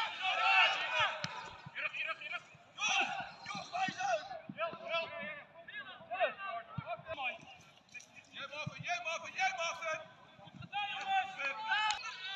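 Men's voices of football players and spectators calling out during play, with scattered faint knocks underneath.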